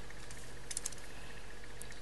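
A few small, sharp metallic clicks from chain nose pliers working a silver chain link onto a jewelry connector. There is a quick cluster a little under a second in and a single click near the end.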